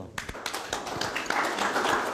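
Audience applause: a few scattered claps that quickly thicken into steady clapping from many hands, growing fuller about a second in.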